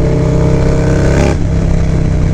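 Harley-Davidson Low Rider S V-twin engine running at road speed through an aftermarket exhaust, heard from the rider's seat with wind noise. Its note climbs slightly and then eases off a little over a second in, as the throttle is rolled back.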